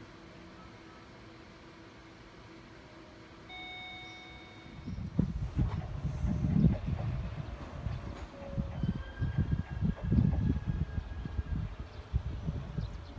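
Wind buffeting the microphone in loud, irregular low gusts from about five seconds in, over faint railway sound from trains approaching the station. A short electronic beep sounds about three and a half seconds in.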